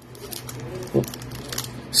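Foil wrapper of a Panini Legacy football card pack crinkling and tearing as it is opened by hand, with a steady crackle of small ticks.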